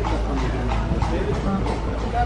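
Indistinct background voices of other people talking, over a steady low rumble.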